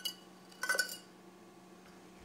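Two light metallic clinks with a brief ring, one at the start and one about two-thirds of a second in, from a stainless steel saucepan being handled as the last of the soup is poured out and the pan is set aside. Then quiet room tone.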